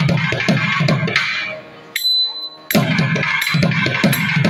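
Thavil drums playing a fast percussion solo passage of a tani avartanam: rapid sharp strokes over deep low strokes. The playing drops away for about a second midway, then resumes at full level.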